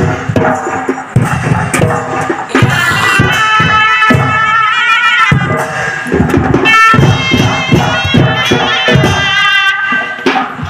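Chhau dance music played loudly: drums beat steadily throughout, and from about two and a half seconds in a reedy, shehnai-like pipe plays a wavering melody over them.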